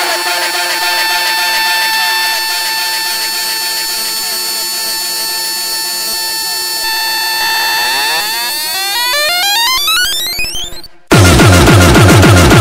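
Electronic music: a dense synthesizer texture with many pitch lines sweeping upward in a build from about seven seconds in. It cuts to a brief silence about eleven seconds in, and then a loud beat with a heavy low end drops in.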